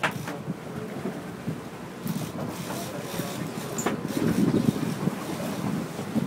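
Wind buffeting the microphone over the steady noise of a sportfishing boat's engine and the sea around the hull, with a couple of faint clicks.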